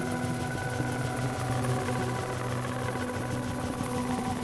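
Ambient electronic drone music: several held tones layered under a fast, grainy, fluttering texture that sounds machine-like.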